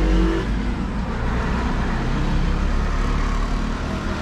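A motor vehicle engine running nearby, heard as a steady low rumble with general traffic noise.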